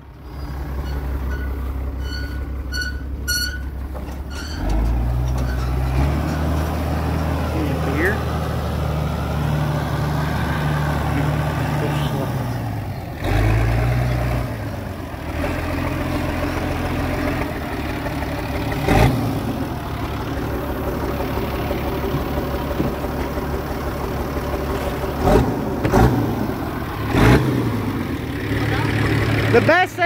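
Allis-Chalmers 7000 tractor's diesel engine running, opening up about four and a half seconds in as it pulls away. A few sharp knocks come later on.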